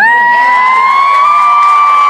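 One person's high-pitched excited scream: a single long held "woo" that swoops up at the start and holds steady, the kind of cheer given right after a sung line.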